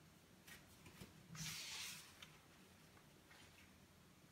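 Faint rustling of paper as the pages of a spiral-bound sketchbook are handled and smoothed flat, with a longer rustle about a second and a half in and a small click just after.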